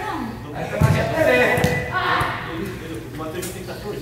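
Soccer ball kicked on indoor artificial turf: two dull thuds about a second apart, echoing in a large hall, among indistinct voices.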